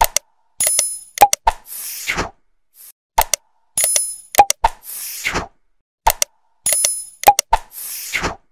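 Like-and-subscribe animation sound effects: sharp mouse-click sounds, a bright bell ding and a short whoosh. The same sequence repeats three times, about every three seconds.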